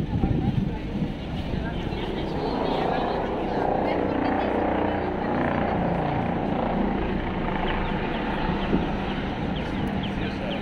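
Busy city street sound: motor traffic passing close, cars and a city bus among it, under the voices of people walking by.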